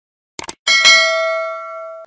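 Subscribe-animation sound effect: a quick double click, then a bell chime struck twice in quick succession that rings on in several clear tones and slowly fades.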